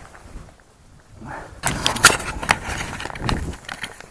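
Handling noise of a body-worn camera being taken off: clothing rustling and sharp knocks and scrapes against the microphone, starting about a second and a half in after a quiet start.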